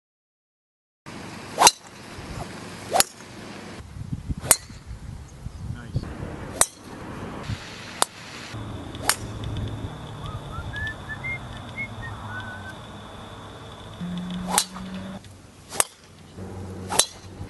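Golf drivers striking balls off the tee: eight sharp cracks, one tee shot after another, spaced one to two seconds apart except for a longer gap in the middle. A few faint bird chirps sound during that gap.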